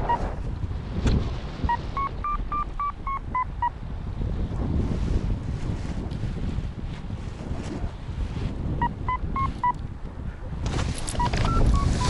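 Paragliding variometer beeping in three runs of quick short beeps, the pitch stepping up and back down within a run. The beeps are its climb tone, signalling rising air. Steady wind rumble on the microphone runs underneath.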